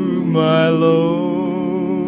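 Singing from an old radio broadcast: long held notes with vibrato, a new note starting about a third of a second in. The sound is thin and cut off at the top, as on an old recording.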